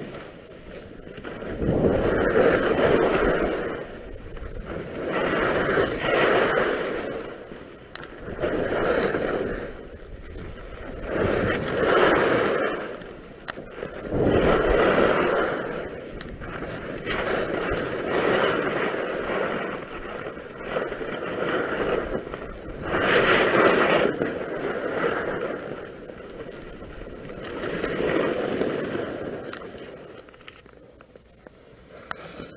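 Skis scraping and carving over packed snow through a series of turns, the sound swelling with each turn roughly every two to three seconds.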